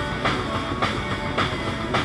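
Rock band playing live, the drum kit close and prominent over distorted guitar, with a hard drum hit about every half second.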